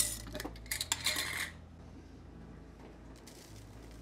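Metal screw lid of a glass mason jar being twisted and handled: a quick run of metallic clinks and scrapes in the first second and a half.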